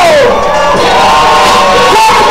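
Hip-hop track playing very loud and distorted, with drawn-out shouted vocals; one shouted line falls in pitch just after the start.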